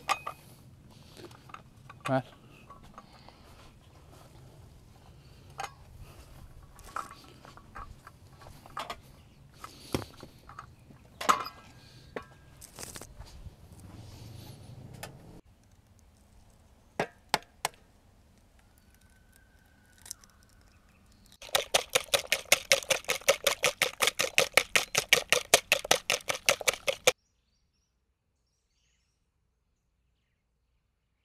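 A whisk beating crepe batter in a bowl, fast and regular at about seven strokes a second for some five seconds, the loudest sound here. Before it, scattered clinks and knocks of dishes and camp-table gear being handled, and two sharp taps.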